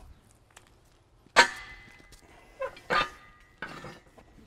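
Steel parts of a heavy-duty sprayer jack clanking as a bottle jack is set in and a pin is moved. One sharp metal clank about a second and a half in rings on briefly, then three lighter knocks follow.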